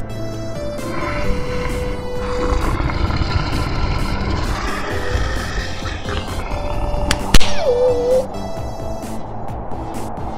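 Soundtrack music with a sound effect over it: a long rough rumbling noise from about a second in, then a sharp crack about seven seconds in, the loudest moment, followed by a short sliding tone.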